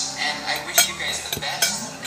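Metal spoon and fork clinking against a ceramic dinner plate while eating, a few short sharp clinks.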